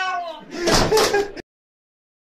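A drawn-out voice trails off, then a door bangs about two-thirds of a second in. The sound cuts off abruptly soon after.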